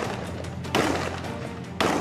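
Three loud rifle shots about a second apart, one right at the start, each trailing off, over background music.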